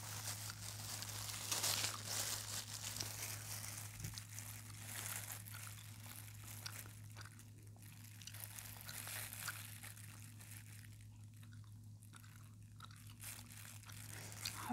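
Crinkly material, crumpled and rustled close to the microphone in irregular crackles, busiest in the first few seconds and sparser later, over a faint steady electrical hum.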